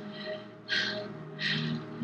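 A woman's shaky, tearful breathing: two sharp breaths, the first about three-quarters of a second in and the second shortly before the end, over a low, held music score.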